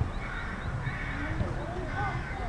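Distant shouts and calls of football players across an open pitch during play.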